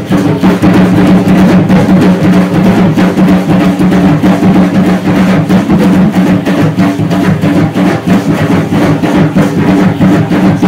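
Drum-led music for an Aztec dance: a steady, dense drumbeat with rattling percussion over a low, sustained drone.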